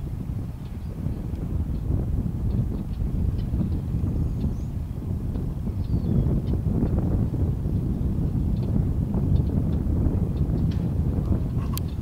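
Wind buffeting the camcorder microphone: a steady, loud rumble with a few faint ticks over it.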